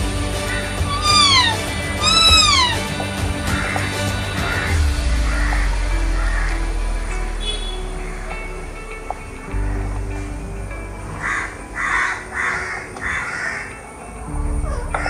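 Animal calls: two drawn-out calls that rise and fall in pitch within the first three seconds, then a run of short harsh calls near the end, over a low hum.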